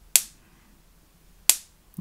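Homemade electric fence charger firing its high-voltage pulses: two sharp, loud snaps a little over a second apart as each pulse discharges.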